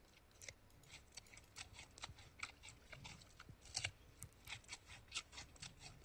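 Faint, irregular crunching of a giant panda biting and chewing a raw carrot, several crisp crunches a second.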